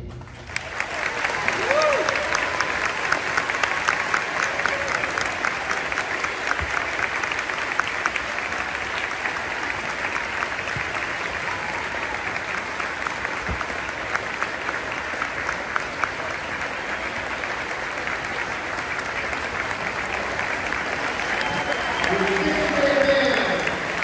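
Audience applauding: dense, steady clapping that starts just after the band's final chord, with a few voices calling out near the end.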